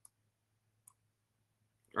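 Two faint computer mouse clicks, one at the very start and one just under a second in, over a faint steady low hum.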